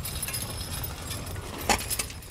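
Three-horse Percheron team pulling a riding plow through sod: harness chains jingling and hooves falling, with a sharp clack near the end.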